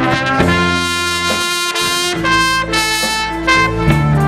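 A trumpet plays a slow melody in long held notes over a band's sustained bass line.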